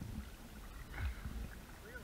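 Canoe paddles pulling through the water during hard paddling, over a low rumble, with a louder knock or splash about a second in.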